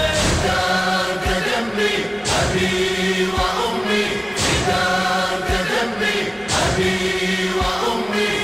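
A choir chanting a Shia mourning elegy for Imam Husayn, with held voices over a slow, steady beat of about one stroke a second.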